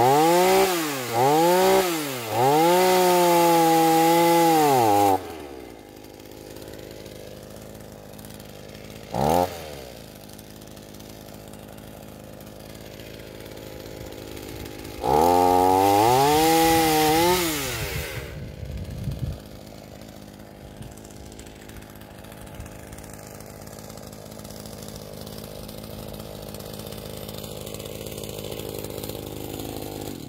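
Two-stroke chainsaw revving hard in short bursts and then held at full revs for the first five seconds, idling with one quick blip of the throttle, then revving again for about three seconds with its pitch sagging as the chain bites into an olive branch, and idling to the end.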